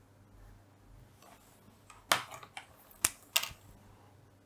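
Fine-tip felt pen drawing short strokes on paper: a few quick, faint scratches and taps about two to three and a half seconds in.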